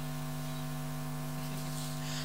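Steady low electrical hum, like mains hum from a recording or amplification system, holding an even pitch throughout.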